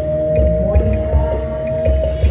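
Marching band playing: one long held note over a steady low drum beat.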